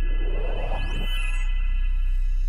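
Electronic logo sting: a deep, steady drone with a whoosh in the first second and a thin rising sweep about a second in.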